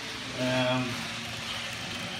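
N gauge two-car multiple unit model train running along the track, a steady faint hiss of its wheels and motor. A man's drawn-out "uh" about half a second in is the loudest sound.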